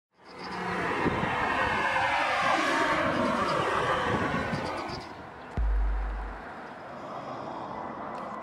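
A loud rushing noise that fades after about five seconds, followed by a single deep bass boom about five and a half seconds in, like the opening sound design of a soundtrack.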